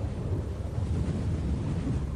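Dark dungeon synth intro: a low, steady, wind-like rumble with no clear melody or voice.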